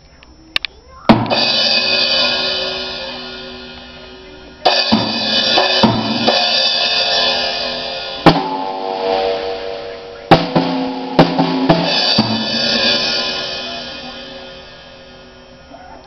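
Ludwig drum kit played by a toddler: about seven loose, unrhythmic hits on drums and cymbals, each crash ringing out and fading over a few seconds before the next, with a few light taps before the first.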